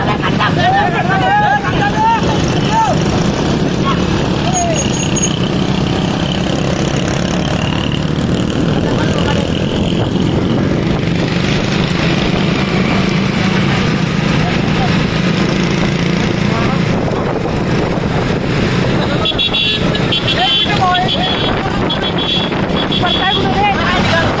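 Several motorcycles riding together, engines running steadily, with men shouting over them. Near the end a high horn sounds in short repeated beeps.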